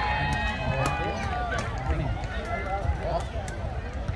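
Players and onlookers calling out and talking during a kick-volleyball rally, with one long drawn-out shout that ends about a second in. Wind rumbles on the microphone, and a few sharp knocks come through.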